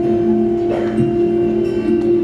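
Instrumental backing track playing: a single sustained chord held steadily, with a light chime-like ring.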